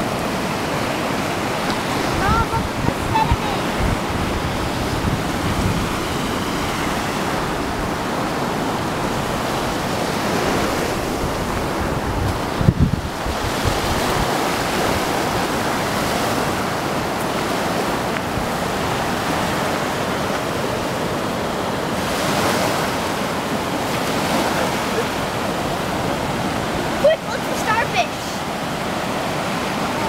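Steady ocean surf breaking and washing onto a sandy beach, with wind on the microphone. A few brief louder bumps and short voice sounds stand out above it, the clearest near the end.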